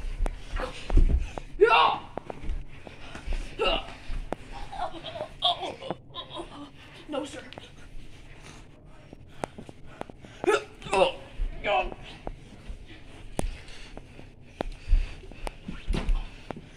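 Two people scuffling while wrestling: laughs, yelps and grunts from a man and a boy, with scattered thumps and shuffling of bodies moving and falling.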